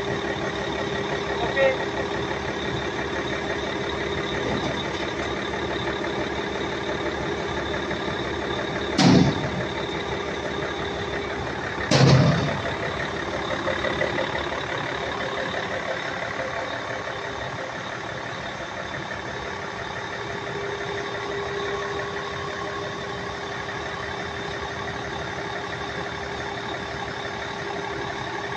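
Heavy truck engine running steadily with a constant hum. A third of the way in come two loud, short sounds about three seconds apart.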